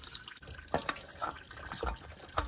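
Scattered light wet ticks and drips: engine oil dripping and a gloved hand handling a new oil filter just smeared with fresh oil on its gasket.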